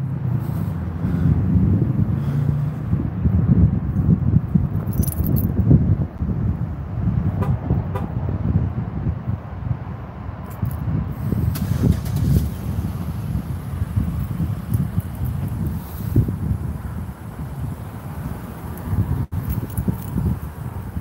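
Uneven low rumble of a handheld phone microphone carried outdoors while walking: wind and handling noise over distant road traffic, with a few faint light clinks.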